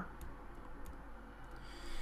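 A few faint, scattered clicks from a computer input device over low room hum, as handwriting is drawn on screen.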